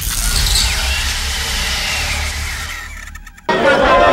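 Sound effect under a black title card: a deep rumble with a hiss that sweeps down and fades over about three seconds, then cuts off abruptly as street noise with voices returns.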